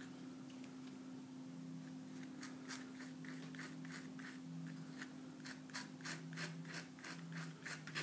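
Palette knife scraping and pressing oil paint against gessoed canvas while mixing it: a run of short, irregular scrapes that starts about two seconds in, over a faint steady hum.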